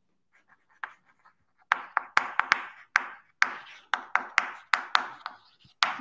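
Chalk writing on a blackboard: a quick series of sharp taps with short scratchy strokes in between, starting a little under two seconds in.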